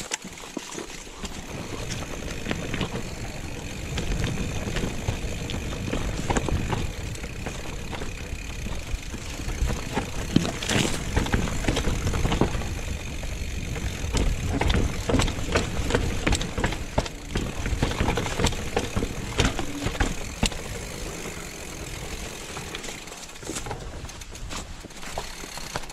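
Mountain bike descending a rough dirt and stone trail: tyres crunching over gravel and rocks, with the bike's chain and frame rattling and knocking over the bumps, over a steady low rumble.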